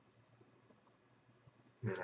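Near silence: room tone in a pause between spoken words, with a man's voice starting again near the end.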